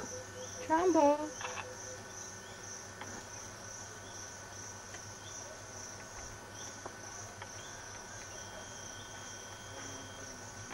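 Insects, crickets by their sound, trilling steadily in a high, evenly pulsing chirr. About a second in, a short pitched call.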